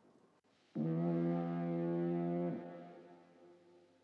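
A single foghorn blast: one low, steady note that starts sharply about a second in, holds for about two seconds and then dies away with a lingering tail.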